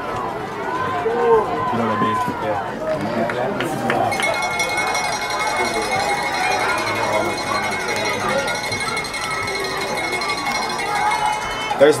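Football crowd chatter, many voices talking at once between plays. From about four seconds in until near the end, a steady high-pitched tone runs under the voices.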